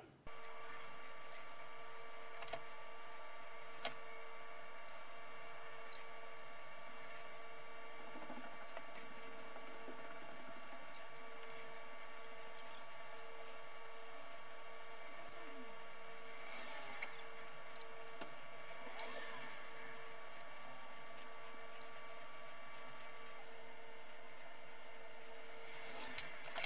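Merkur 34C safety razor with a Concord blade scraping over a scalp coated in shave butter in scattered short strokes, on a second pass across the grain. Under it runs a steady background hum with several faint tones.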